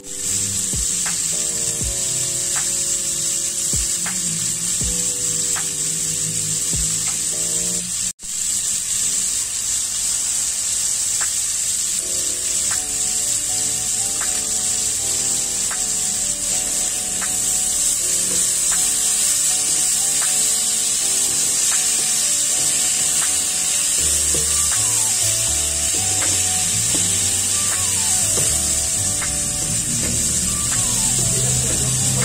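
Cubes of pork loin sizzling in olive oil and butter in a frying pan, under background music with a steady beat. The sound drops out for an instant about eight seconds in.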